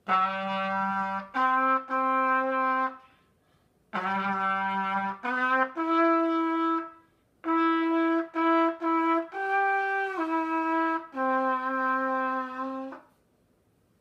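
BFB Tromba played as a slow, simple tune of long held notes in three phrases with brief pauses between them; the last phrase closes on a long held note near the end.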